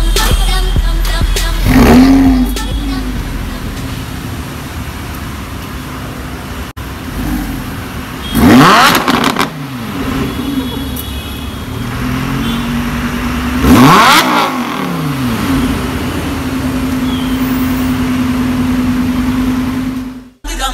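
Lamborghini Huracan's 5.2-litre V10 idling steadily. It flares briefly about two seconds in and is blipped hard twice, near eight and fourteen seconds in, each rev rising sharply and falling back to idle.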